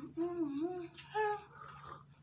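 A woman's voice making short, wavering closed-mouth "mm-hmm" sounds, three in a row.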